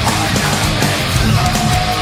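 Heavy metal music: a distorted Ibanez electric guitar playing along with the song's backing track, with a steady high held note entering about two-thirds of the way through.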